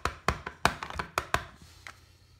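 Clear photopolymer stamp on an acrylic block tapped repeatedly onto an ink pad to ink it: a quick run of sharp taps, about five a second, stopping about a second and a half in.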